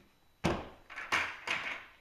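Lidded plastic bucket of flint being handled: a sharp knock about half a second in, followed by two rougher knocking, scraping sounds.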